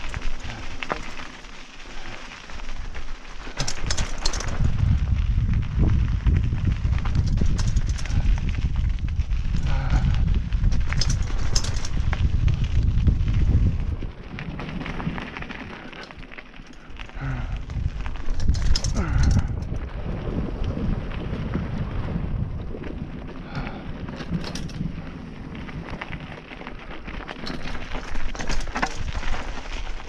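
Mountain bike riding down a dirt singletrack, with wind buffeting the camera microphone in heavy gusts and sharp clicks and rattles from the bike over bumps and tyres on the trail. The wind rumble is strongest for about ten seconds after the start and again briefly past the middle.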